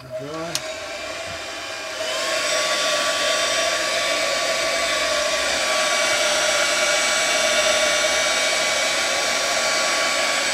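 A small air compressor's motor starts with a rising hum, then about two seconds in the spray gun opens up and hisses steadily as it sprays paint onto a model aircraft elevator.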